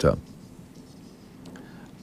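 Faint scratching of a felt-tip marker drawing on an overhead-projector transparency, just after a voice breaks off.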